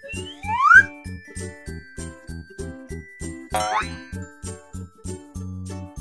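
Bouncy children's cartoon background music with a steady beat, with a rising whistle-like slide effect about half a second in and another quick rising chime-like effect about three and a half seconds in.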